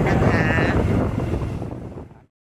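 Wind buffeting the microphone: a steady low rushing rumble, with a woman's voice briefly at the start. It fades away near the end.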